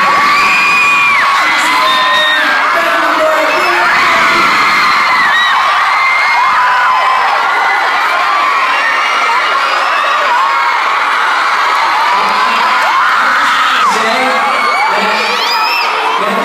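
Concert crowd screaming and cheering, a dense mass of high-pitched shrieks and whoops overlapping without a break.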